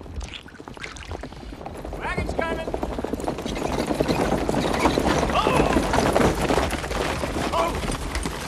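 Horse-drawn wagon pulling in: hooves clopping and wooden wheels and harness rattling, growing louder over the first few seconds as it arrives. A few short calls sound over it.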